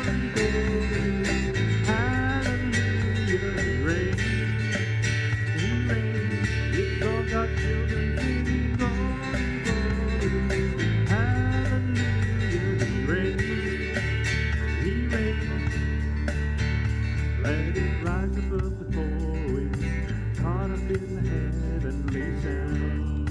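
Live church worship band playing a country-style praise song on drums, electric and acoustic guitars and grand piano, with sung vocals.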